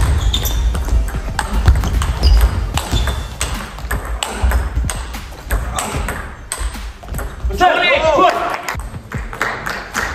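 A table tennis rally: the ball clicking sharply off the bats and the table in quick succession, the hits ringing in a large hall.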